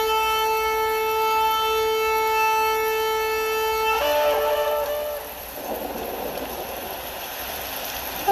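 A long, steady horn-like note held for about four seconds, followed by a few short notes and then a quieter rushing hiss.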